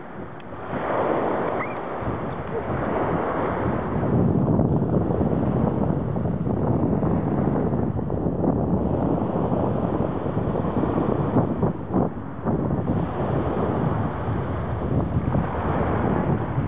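Steady rushing of small waves breaking on the shore, mixed with wind buffeting the microphone.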